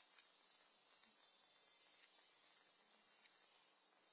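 Near silence: a faint steady outdoor hiss with a few soft ticks.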